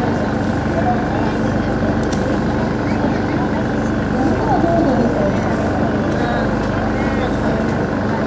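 Portable engine generator running with a steady hum, over faint crowd chatter.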